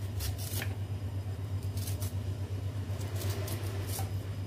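Spoon scraping the soft pulp out of a split drumstick (moringa) pod: a few short, rasping scrapes, two close together at the start, more around the middle and a longer run near the end, over a steady low hum.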